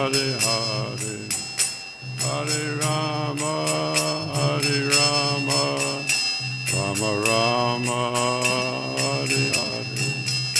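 A man singing a devotional chant, keeping time on karatals: small hand cymbals struck in a steady rhythm, their bright ringing carrying on between strikes. A steady low drone sounds under the voice.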